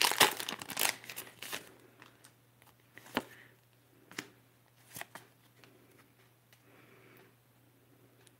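Foil wrapper of a Pokémon trading card booster pack crinkling as it is torn open, loudest in the first second or so. Then a few short, soft clicks and rustles as the cards are pulled out and handled.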